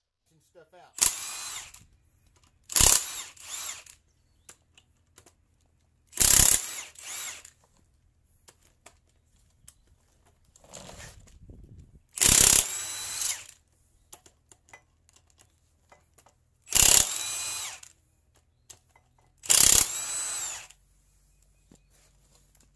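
Milwaukee Fuel cordless impact wrench (1400 ft-lb) with a Sunex 14 mm 12-point impact socket hammering crankshaft main-cap bolts loose on a bare engine block. There are six short bursts, each a sharp hammering start that drops to a quieter run as the bolt spins out.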